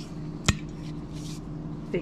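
A single sharp click about half a second in, then a brief faint rustle, over a low steady hum.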